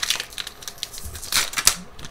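Foil wrapper of a trading-card booster pack crinkling as it is handled and opened, in two bursts of crackling, one at the start and a louder one about a second and a half in.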